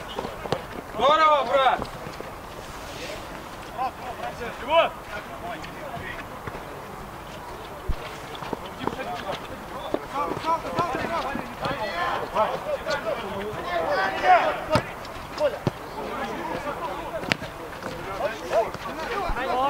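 Footballers shouting and calling to each other on the pitch, with a loud shout about a second in and more calls later. A few sharp knocks, typical of the ball being kicked, come near the middle and toward the end.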